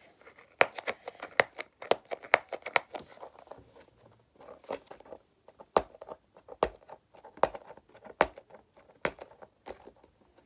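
Hot Wheels blister pack, a plastic bubble on a cardboard card, crackling and snapping as it is pried and torn open by hand. The snaps are sharp and irregular, dense for the first three seconds and sparser after.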